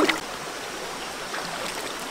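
Shallow rocky stream flowing steadily, with a brief sharp splash-like noise right at the start.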